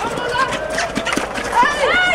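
Several sharp clacks of field hockey sticks striking the ball, followed near the end by high-pitched shouts from players.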